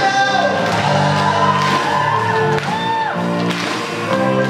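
Male singer performing a pop-rock song with a live symphony orchestra, strings and band playing together under his sung lines.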